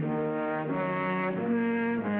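Brass section of an orchestral cartoon score playing held chords that change step by step about every two-thirds of a second.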